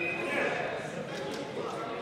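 Indistinct voices in a sports hall: coaches and spectators talking and calling out under a steady murmur.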